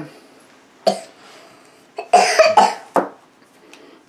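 A person coughing: one short cough about a second in, then a louder run of coughs around two to three seconds in.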